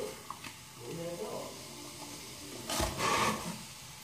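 Quiet handling sounds as baking soda is shaken from its cardboard box into a glass jar: a few faint clicks, then a short rustle with a soft thump about three seconds in.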